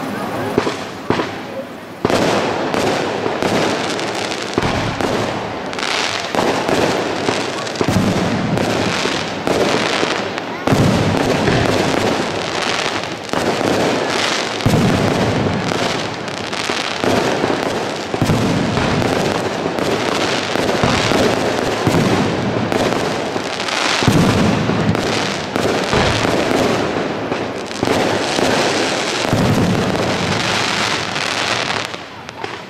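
Fireworks display: aerial shells bursting in rapid succession, a dense, near-continuous run of bangs starting about two seconds in.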